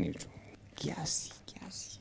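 Quiet, whisper-like voice sounds close to a microphone: a word trails off, then soft breathy sounds come with short pauses between them.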